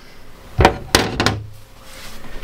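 Two knocks on a wooden chopping board, about half a second apart, as a bowl is moved aside and a tomato is set down.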